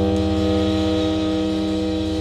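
Experimental music drone: several steady held tones sounding together over a low, fast buzzing flutter, unchanging throughout.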